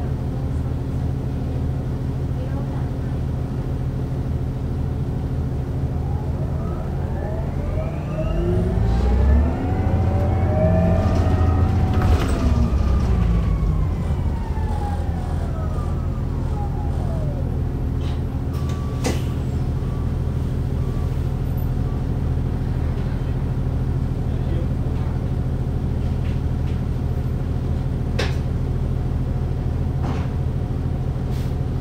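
Inside a 2009 Orion VII NG diesel-electric hybrid bus (Cummins ISB engine, BAE Systems HybriDrive): a steady low drone of the running drivetrain and air conditioning. About seven seconds in, the electric drive's whine rises in pitch as the bus speeds up, peaks around twelve seconds, then falls away by about seventeen seconds as it slows.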